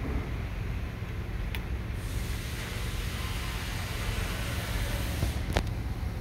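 Dodge Grand Caravan's 3.6-litre V6 idling, heard from inside the cabin, as the climate-control blower fan is turned up about two seconds in, adding a steady rush of air. A sharp click near the end.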